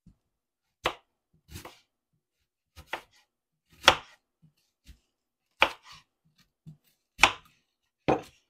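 Kitchen knife slicing a whole peeled onion on a wooden cutting board: about six separate slow strokes, each ending in a knock of the blade on the board, the later ones louder.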